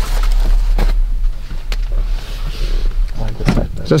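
A steady low rumble under rustling and a few light clicks as fitted caps are handled and pulled from the stock shelves, with a voice coming in near the end.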